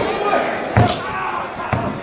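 Heavy impact booming on a pro-wrestling ring's canvas-covered boards, one loud thud about a second in and a smaller one near the end.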